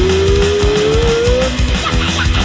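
Punk rock band playing a song with guitars, bass and drums. One long held note slowly rises in pitch, ending about a second and a half in, over the full band.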